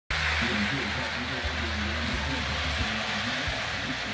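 Electric model train running around its track: a steady rolling hiss over a low motor hum, with faint voice or music in the background.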